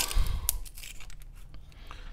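A wooden carpenter pencil being twisted in a handheld plastic carpenter-pencil sharpener, the blade scraping and cracking off shavings in a run of small rough scrapes and clicks, with a sharper snap about half a second in. The blade is tearing the wood rather than cutting a clean point.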